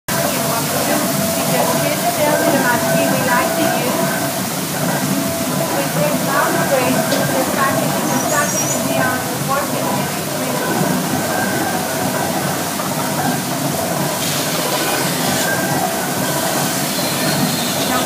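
Water-wheel-driven workshop machinery running: the wheel turning with water splashing, and the overhead line shaft, pulleys and belts giving a steady mechanical running noise with a couple of steady high whining tones.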